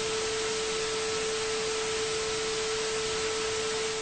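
TV test-pattern sound: a steady, unbroken mid-pitched tone under a constant hiss of static, as on a 'no signal' colour-bars screen.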